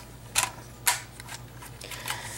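Plastic LEGO parts of a model helicopter clicking and knocking as it is handled and turned in the hands, with two sharper clicks about half a second apart and a few lighter ticks.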